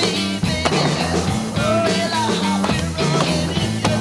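Rock music soundtrack with drums and guitar, with skateboard wheels rolling on concrete mixed in underneath.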